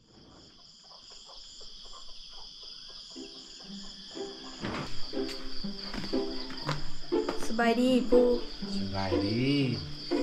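Insects, likely crickets, chirring steadily at a high pitch. From about four seconds in, people's voices talking grow louder over the insects.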